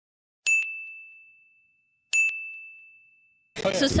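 Two identical bright dings of a single pitch, each starting sharply and fading out over about a second. The second comes about a second and a half after the first, against dead silence, like an edited-in chime sound effect.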